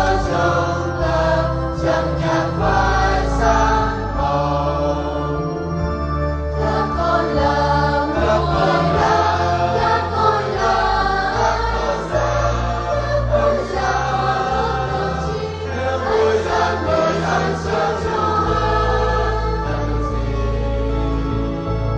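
Vietnamese Catholic church choir singing a Mass hymn in parts, with instrumental accompaniment holding sustained low notes beneath the voices.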